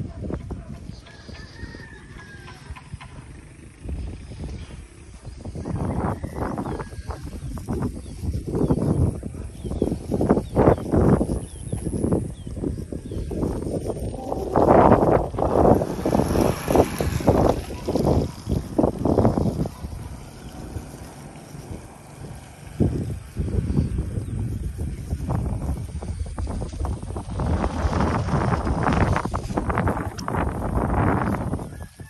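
Roosters crowing several times, over a steady low rumble.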